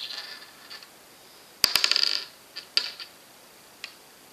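A quick clatter of small, sharp clicks about a second and a half in, followed by a few single clicks: small hard objects being handled on a wooden tabletop.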